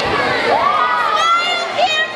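Crowd of children's voices talking and calling out at once in a gym, with one long rising call and a shrill, high-pitched shout in the second half.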